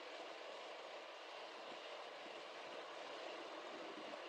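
Faint steady hiss, with no distinct sound events.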